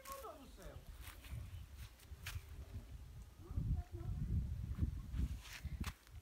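Footsteps on sand and rock with a few sharp clicks, over irregular low rumbling on the microphone that is strongest in the second half. A faint voice is heard briefly at the very start.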